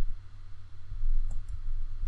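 A few short computer-mouse clicks, about a second in, over a steady low hum.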